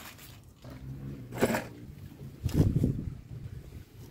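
Car cabin with the engine running as a steady low hum, broken by two short louder sounds about a second and a half and two and a half seconds in.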